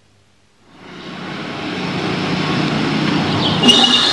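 Street sound with road traffic fading in and building steadily. Near the end a few short high thin tones join in.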